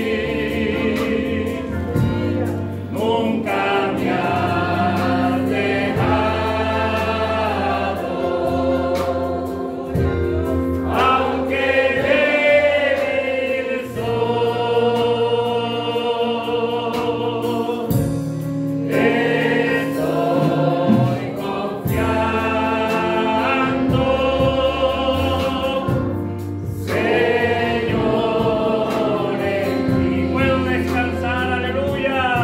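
Live Spanish-language Christian worship song: a man sings into a microphone in long, held phrases with vibrato, other voices singing along, over keyboard and electric guitar.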